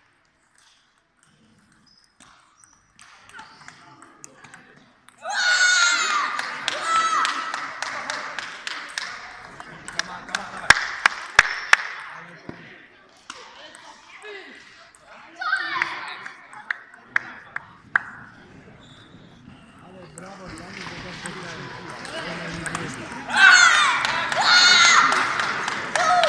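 Celluloid-style table tennis ball knocking on paddles and table during a rally, sharp short clicks about two a second in the middle stretch. Loud voices in the hall rise over it shortly after the start and again near the end.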